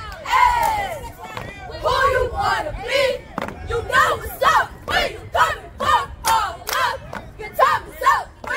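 A squad of girl cheerleaders shouting a cheer together, the words coming in short, evenly spaced bursts of about two or three a second over the second half.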